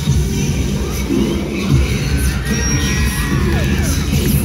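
Loud cheerleading routine music with a pounding beat, with a crowd cheering and shouting over it, swelling in the second half as the team puts up its stunts.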